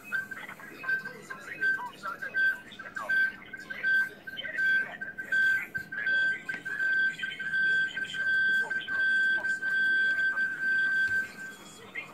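A high-pitched electronic tone beeping over and over, in short uneven pips at first and then longer, evenly spaced beeps, stopping shortly before the end; a faint voice sounds underneath.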